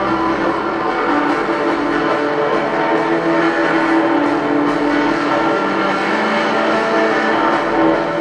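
Live rock music from the stage, led by sustained electric guitar notes, steady and loud as heard from the arena floor.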